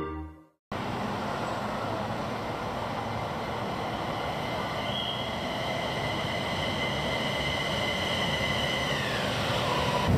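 Airport Rail Link electric train pulling into the station: a steady rumble, joined about halfway by a high whine that falls in pitch near the end as the train slows.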